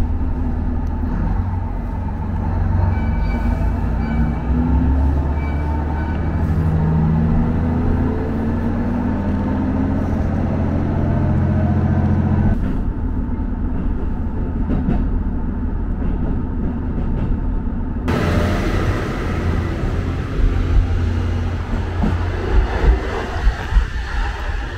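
Diesel railcar heard from inside the carriage, its engine note rising as the train pulls away and gathers speed. About halfway through the sound changes suddenly to a steadier rumble, with a few sharp knocks near the end.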